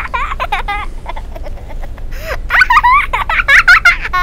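Laughter: a run of voiced laughing that grows louder in the second half.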